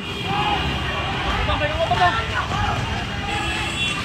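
Voices of a crowd calling out over the steady low rumble of a motor scooter's engine and street noise.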